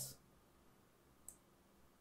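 Near silence: room tone with one faint, brief click a little over a second in, a computer mouse button being clicked.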